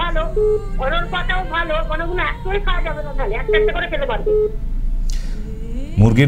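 A person's voice heard over a telephone line, narrow and tinny, with a few short beeps on the line. The voice stops about four and a half seconds in, and a short rush of noise follows.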